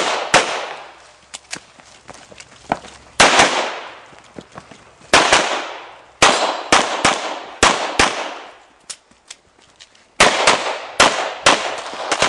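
Pistol shots fired in quick pairs and short strings, each sharp crack followed by an echo that dies away within about a second. Gaps of one to two seconds fall between the groups, with a few fainter clicks in them.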